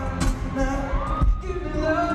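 Live pop music: a male voice singing into a microphone over a loud backing with a pulsing bass beat, with drawn-out, gliding notes.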